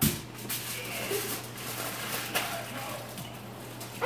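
Aluminium foil crinkling and rustling as potatoes are wrapped by hand, loudest in a sharp rustle right at the start and then in scattered short crinkles, over a steady low hum.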